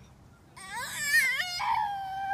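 A young girl's high-pitched whining cry, starting about half a second in with a wavering, rising pitch and then jumping to a higher held note near the end.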